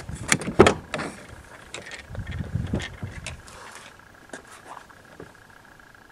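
Door of a 2004 Chevy Tahoe being opened: the exterior handle pulled and the latch clicking sharply open, followed by softer rumbling and a few faint knocks.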